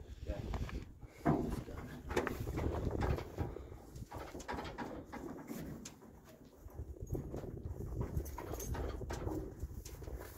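Short animal calls, the clearest about a second in, over irregular low knocking and shuffling from horses and mules standing in a stock trailer.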